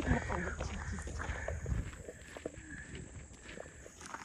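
Footsteps of people walking outdoors, uneven and irregular, with faint voices of companions talking.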